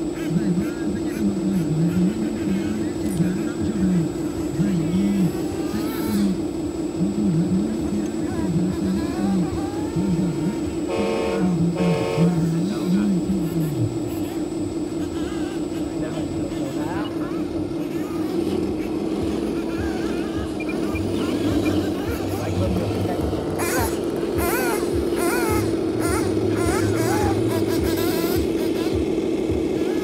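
A 1/14-scale RC hydraulic excavator's pump motor whines steadily while the machine digs and swings its bucket, the tone wavering under load in the second half. Sharper clicks and rattles come in over the last few seconds.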